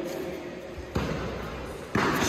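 Two sharp impacts from karate sparring, about a second apart, echoing in a large hall.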